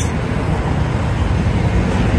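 A police SUV rolling slowly past at close range, its engine and tyres heard as a steady low noise along with street traffic.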